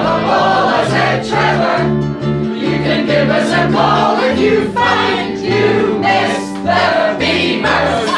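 A group of people singing a song together, in the manner of a choir, over an instrumental accompaniment whose bass line steps steadily from note to note.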